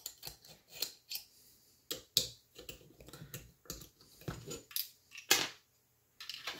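Irregular clicks and clinks of small metal hardware (a hex key, screws and T-nuts) knocking against an aluminium extrusion and 3D-printed parts as they are fitted by hand, with the loudest knock a little past five seconds in.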